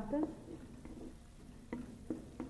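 Sliced onions frying in ghee in a metal pot while a spatula stirs them, with a low sizzle and a few light clicks of the spatula against the pot in the second half.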